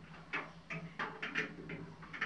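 Faint scuffs and light knocks, about six in two seconds, as someone steps and shifts among loose debris, over a faint steady low hum.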